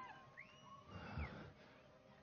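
Near silence, with a faint, distant high call that rises, holds and falls over about a second.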